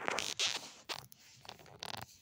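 Scraping and rustling in several short bursts as a small dog rolls over on grit-covered asphalt, with one more brief scrape near the end.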